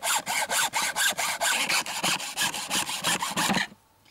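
Hand hacksaw cutting through a raw pig's head, the blade rasping through bone in quick, even back-and-forth strokes, several a second, that stop near the end.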